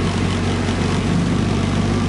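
A vehicle engine running at a steady speed: a loud, unchanging low drone with a noisy rush over it.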